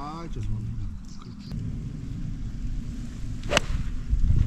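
A golf club striking the ball off the tee: one sharp, crisp crack about three and a half seconds in.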